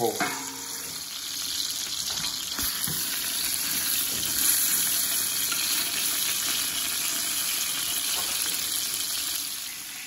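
Venison neck and shank pieces searing in hot olive oil in a stainless steel stockpot, sizzling steadily as they brown to form a crust, the sizzle growing a little louder over the first few seconds.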